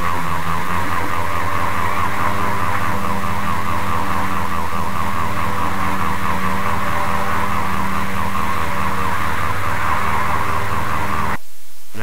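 A loud, dense electronic drone of many overlapping steady tones with a fast fluttering texture. It is a digitally layered, heavily processed audio effect, and it cuts off abruptly near the end.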